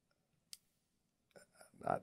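A single sharp mouth click, as lips or tongue part, about half a second in, in an otherwise quiet pause; faint breath sounds follow, and a man's voice starts just before the end.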